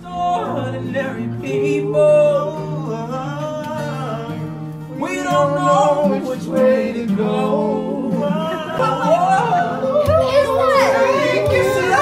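Several men singing together in harmony, starting suddenly, with long held notes that slide up and down over steady low notes.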